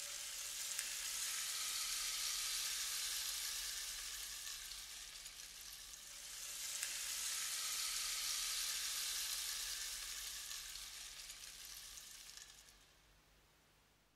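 Faint, even hiss that swells up twice and fades away to near silence near the end.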